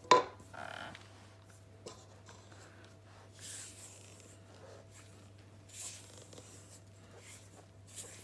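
Silicone spatula folding thick cookie batter in a stainless steel bowl: soft scraping and rubbing strokes a few times, with a sharp knock on the metal bowl just at the start. A faint steady hum underneath.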